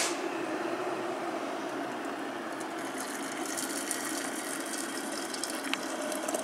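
Electric kettle at a full boil: a steady hiss and rumble, with the kettle still running because it has not switched itself off.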